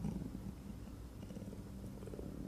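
A pause in a man's speech, filled by a faint, steady low electrical hum and room tone from the recording.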